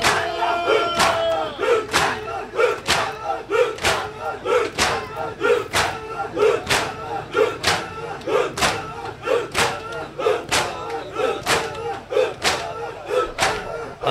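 Crowd of male mourners performing matam: hands striking chests in unison about twice a second, with a collective shout of the chant on each stroke.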